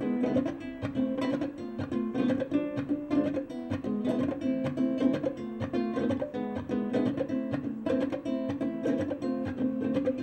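Ukulele played solo in a flamenco-influenced style: a fast, continuous run of plucked notes and strums.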